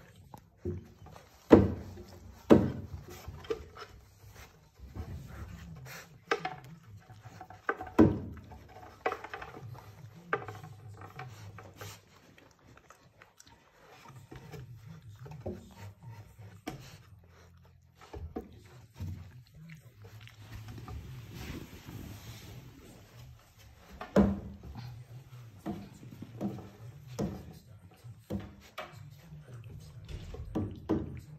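Saarloos wolfdog puppies moving about on a wooden puppy bridge: their paws knocking and thumping on the wooden planks, with rubbing and scrabbling between. The sharpest knocks come in the first ten seconds and again about three-quarters of the way through.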